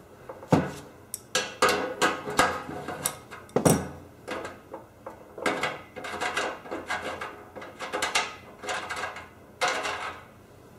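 Steel 1/8-inch pipe tap being turned by hand into the fuel-fitting hole of a generator gas tank, cutting threads: a run of irregular clicks and scrapes, with sharper knocks about half a second in and near four seconds.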